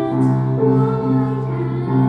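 A boy singing solo with upright piano accompaniment, holding long notes of a slow melody.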